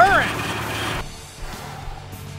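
Supercharged 3.3-litre V6 of a 2002 Nissan Xterra idling, with no odd noises, just after the supercharger swap. About a second in it cuts off suddenly, leaving a quieter background with faint music.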